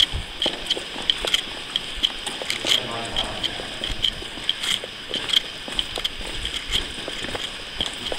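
Footsteps of several people walking along a wet, gritty tunnel floor: irregular scuffs and knocks, with a light, quick ticking about four times a second throughout.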